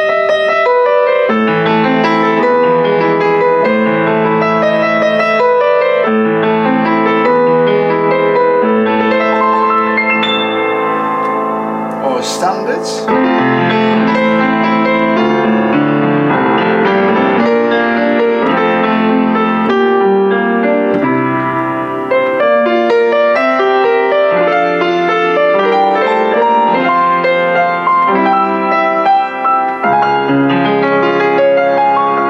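Kemble K131 upright piano being played, a continuous flow of notes with chords in the lower range and a melody above, with a brief break about twelve seconds in.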